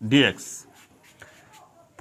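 Felt-tip marker writing on a whiteboard: a brief scratchy stroke about half a second in, then faint strokes.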